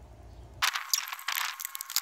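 Camera handling noise: fingers gripping and rubbing the camera right at its microphone. It starts suddenly about half a second in and goes on as a loud, scratchy crackle with many small clicks.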